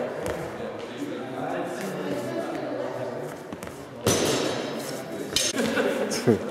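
Indistinct voices of many people talking in an echoing sports hall. About four seconds in the sound suddenly gets louder and fuller, and a sharp knock follows a little later.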